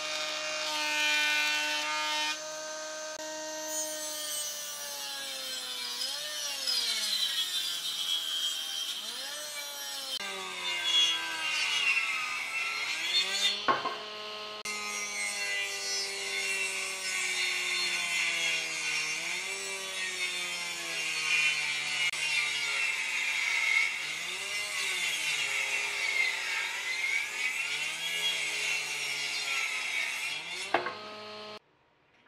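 Combination woodworking machine cutting a wooden board on its jointer and table saw, with a high cutting noise over the motor's hum. The hum drops in pitch each time a cut loads the motor and rises again as it frees up.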